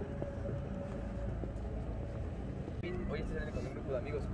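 Outdoor city ambience: a steady low rumble of traffic, with faint voices of passers-by coming up near the end.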